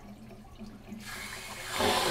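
Water starting to rush through a fire sprinkler deluge valve riser as its control valve is cracked open, discharging through the open flow test valve: a hiss that begins about halfway through and grows louder near the end.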